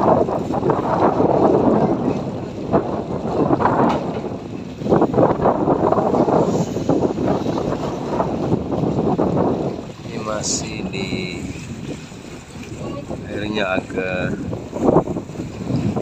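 Wind buffeting the microphone over the rush of water along a moving boat, loud for about ten seconds and then easing. Faint voices come in near the end.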